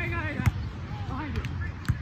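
A volleyball struck twice by players' forearms and hands: two sharp smacks about a second and a half apart as the ball is passed and set, with players' short calls between them.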